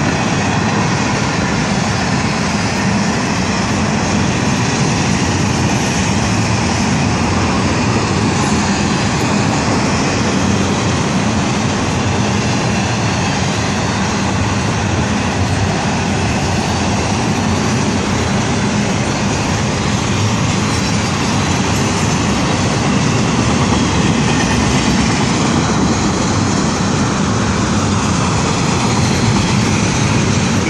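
CSX intermodal freight train's cars rolling past slowly: a loud, steady rumble and rattle of steel wheels on the rails.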